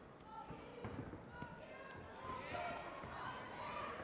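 Several voices shouting and calling out around a cage fight, getting louder and busier about halfway through, over a few dull thuds of strikes and footwork on the mat.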